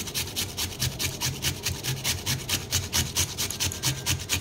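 Raw potato being grated on a handheld metal grater: a wet rasping scrape in rapid repeated strokes.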